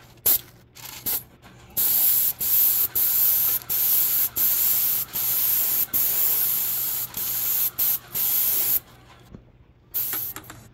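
Paint spray gun hissing as it sprays paint onto house siding, in a series of trigger pulls with short breaks between strokes. The spraying stops about nine seconds in.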